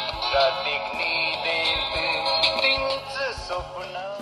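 A song, a singer over a steady beat, played back from a cassette through a small portable cassette player's built-in speaker.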